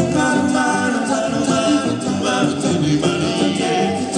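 Live band music: women singing into microphones, backed by electric bass.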